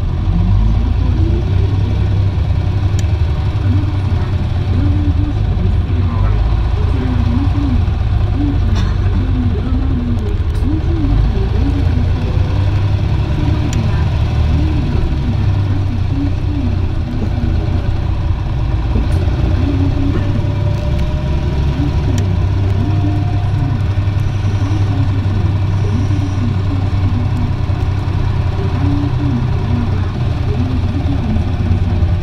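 Cabin sound of an Isuzu Erga city bus under way: its diesel engine drones steadily low, with scattered rattles and a faint rising whine about twenty seconds in. People's voices carry over it.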